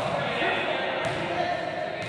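Pupils' voices in an echoing sports hall, with a basketball bouncing on the hall floor twice: once at the start and again about a second in.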